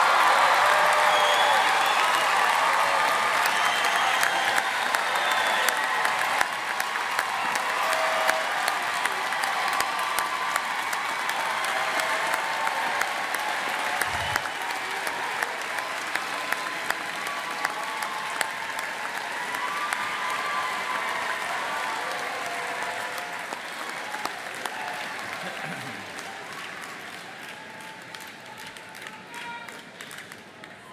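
Large audience applauding, a dense patter of many hands clapping with voices calling out over it. The applause is loudest at first and gradually fades away over the stretch.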